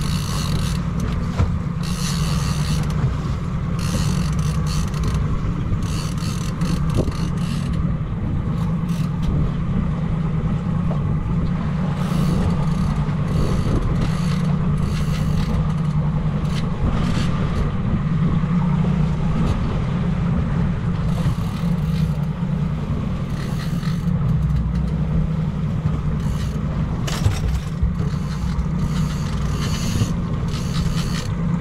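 Outboard motor running steadily at trolling speed, a constant low drone, with irregular bursts of hissing wind and water noise over it.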